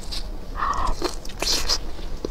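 Short crisp clicks and crackles of fried meat skewers on bamboo sticks being handled with a plastic-gloved hand, with one brief mid-pitched sound about half a second in.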